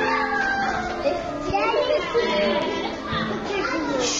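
Young children's voices, high-pitched calls and chatter without clear words, over quieter instrumental background music.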